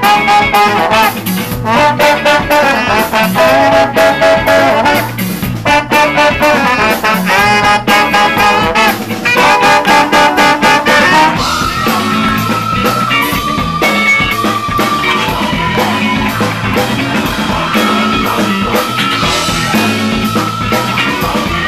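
Live ska band playing, with brass over guitar and a steady beat. About halfway through, the horns settle into long held notes and the music gets a little quieter.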